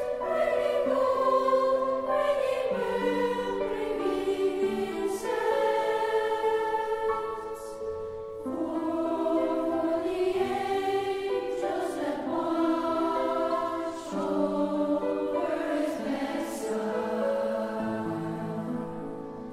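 Boys' choir singing a slow carol in long held notes, with a brief break between phrases about eight seconds in.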